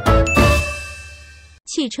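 The last chord of a cheerful intro jingle, with a bright ding that rings and fades away over about a second and a half. A voice starts speaking just before the end.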